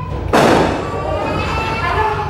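A sudden loud thud about a third of a second in, followed by excited voices and laughter.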